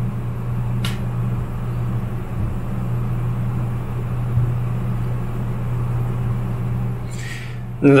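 Steady low hum, with a single click about a second in.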